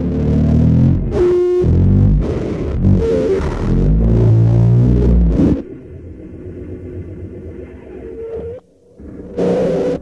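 Experimental noise recording: a dense, distorted low rumble with a short pitched electronic tone about a second in. About halfway through it drops to a quieter, steady droning layer, cuts out briefly near the end, then returns as a loud burst of noise.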